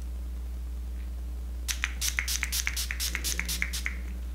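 A quick run of about a dozen short, hissy spritzes from a pump face-mist spray bottle, starting a little under two seconds in.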